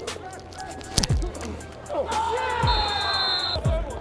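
Background music with deep, falling bass hits recurring every second or so. A single sharp hit cracks through about a second in, and a voice is heard in the second half.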